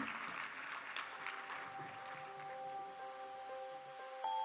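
Audience applauding at the end of a lecture, dying away over the first few seconds, while soft outro music with long held notes fades in about a second in.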